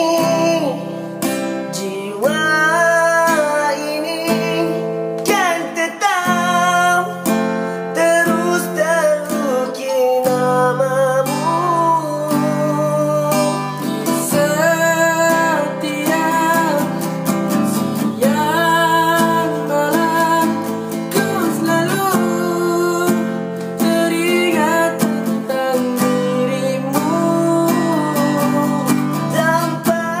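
A man singing a slow melody, with gliding, ornamented notes, to his own strummed acoustic guitar.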